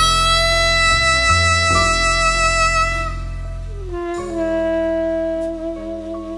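Tenor saxophone playing a slow jazz ballad. It holds one long high note with vibrato, then slides down into a lower held note about four seconds in, over sustained piano and bass.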